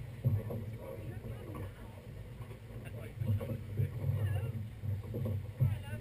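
Indistinct chatter of people standing nearby, over an uneven low rumble that swells and fades, with a louder bump near the start and another near the end.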